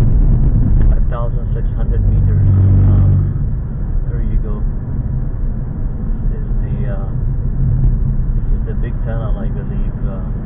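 Car interior driving noise: a steady low rumble of engine and tyres on the road, heard from inside the cabin. It is loudest for the first three seconds, then eases slightly.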